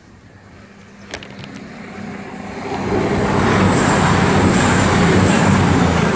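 Fast passenger train passing through the station without stopping: a rush of wheels on rails builds over the first few seconds to a loud, steady roar, with a thin high whine over it in the second half.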